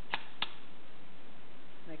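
Two sharp clicks about a third of a second apart as a microscope attachment is set onto the Leica operating microscope's mount and its pins seat. A steady hiss runs beneath.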